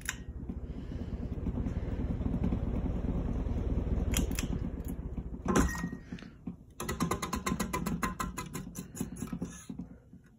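Casablanca Lady Delta ceiling fan running with its blades spinning: a steady low hum with rapid rattle, a few sharp clicks and a loud knock about halfway through. In the last three seconds comes a fast, even ticking.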